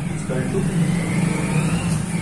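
A steady low mechanical hum, as of an engine running, with a faint whine that rises in pitch through the second half.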